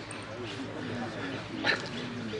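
Low background chatter of people's voices with faint bird chirps, and one short, sharp call about three quarters of the way through.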